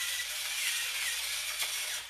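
Pepper mill grinding black pepper: a steady, unbroken grinding noise.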